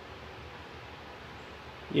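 Faint, steady background noise with no distinct events; a man's voice starts right at the end.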